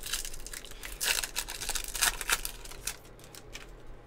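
Foil wrapper of a Topps baseball card pack being torn open and crinkled: a dense run of sharp crackles for the first two and a half seconds, then fainter, sparser rustling.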